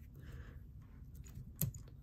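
Faint small clicks and handling noise as a finished fly is taken out of the jaws of a fly-tying vise, with one sharper click near the end.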